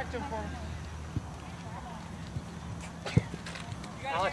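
Outdoor field ambience with faint distant voices, a small thud about a second in, and a sharp thud about three seconds in from a soccer ball being kicked long into the air.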